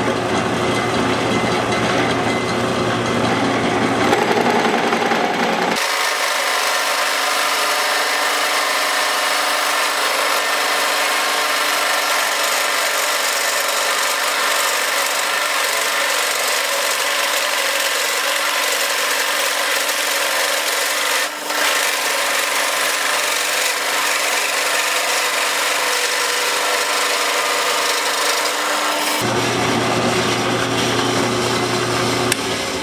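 Drill press running with a 3-inch Forstner bit boring a deep hole into a wooden block: a steady cutting noise over the motor's hum. About six seconds in, the low hum drops away and the sound turns thinner and hissier until just before the end, with one brief dip about two-thirds of the way through.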